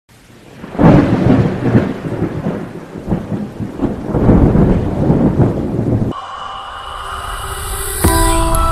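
Thunder sound effect: a loud crack about a second in, then rolling rumbles over a rain-like hiss for several seconds. About six seconds in it gives way to music with held tones.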